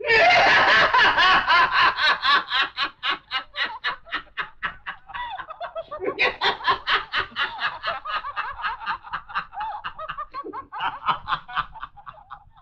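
A man laughing loudly and at length in rapid, evenly spaced 'ha-ha' pulses. The laughter fades, surges again about six seconds in, and dies away near the end.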